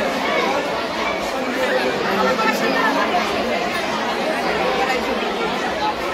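A large crowd chattering: many voices talking at once in a steady, unbroken babble.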